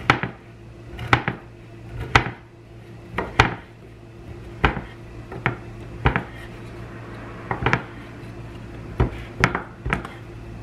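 Kitchen knife chopping smoked brisket on a wooden cutting board: sharp knocks of the blade on the board, about one a second and unevenly spaced.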